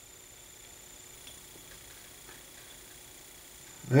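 Quiet room tone: a faint steady hiss with a thin high whine, and a few barely audible light ticks. A man's voice comes in right at the end.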